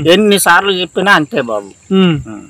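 A man talking, with a steady high-pitched cricket drone underneath.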